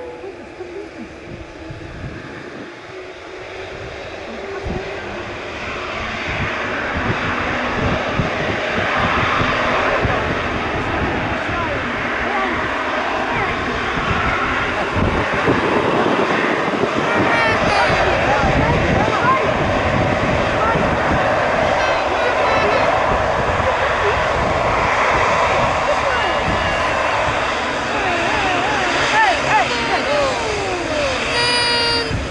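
Boeing 787-8 Dreamliner's jet engines running as the airliner rolls on the runway after landing. The noise grows louder over the first several seconds as it comes closer, then stays steady and loud.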